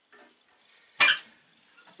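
Door of a cast-iron wood-burning stove being unlatched and swung open: one sharp metallic clank about a second in, then a brief high squeak.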